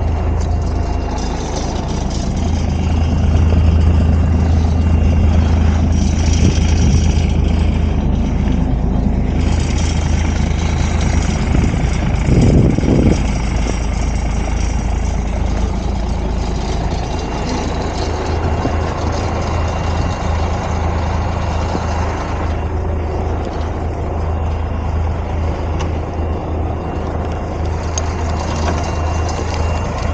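The diesel engine of an M939A2 military cargo truck idling steadily, with a brief louder noise about halfway through.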